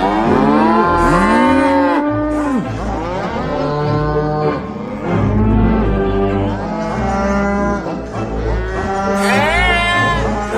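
Wurlitzer theatre pipe organ sounding sustained chords whose pitch swoops up and down, giving a mooing, cow-like sound.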